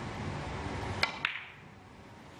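Two sharp, ringing clicks about a second in, a fifth of a second apart: cue and carom billiard balls striking as a three-cushion shot is played, over a low hall murmur.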